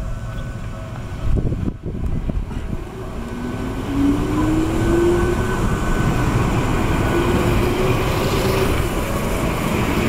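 Sanki Railway electric train (ex-Seibu stock) pulling away from the platform. Its traction motors give a whine that rises in pitch twice as it gathers speed, over rolling and wheel noise that grows louder as the cars pass close by.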